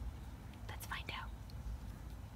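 A person's faint whisper, a couple of short breathy sounds about a second in, over a low steady background rumble.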